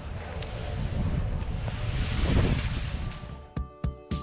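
Wind rushing over the microphone of a moving action camera, and skis sliding over packed snow, as a steady noisy rumble. Near the end this cuts to music.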